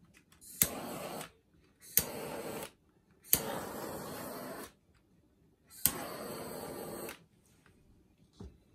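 Handheld butane torch lit four times in a row, each sharp ignition click followed by the steady hiss of the flame for about one to one and a half seconds, the last two bursts longest.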